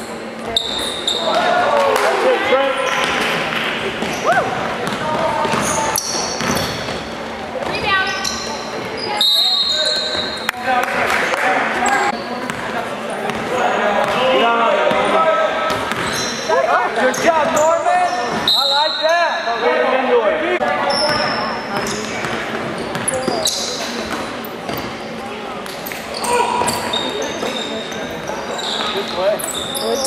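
Basketball game in a gymnasium: a ball bouncing on the hardwood court amid players' and spectators' shouting voices, with the hall's echo.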